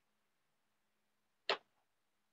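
A single sharp click about one and a half seconds in, over a faint steady hum.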